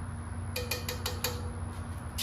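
A measuring spoon rapped about five times in quick succession against a cast iron skillet, the metal ringing faintly after each tap, to knock out chili powder that stuck in the spoon.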